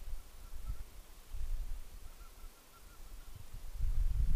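A faint bird call: a quick series of short, evenly spaced notes at one pitch, heard twice, near the start and again in the second half, about five notes a second. An irregular low rumble runs underneath.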